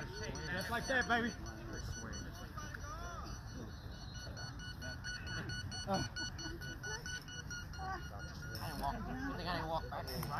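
A beep baseball sounding a rapid, even string of high electronic beeps, with voices of players and onlookers talking around it.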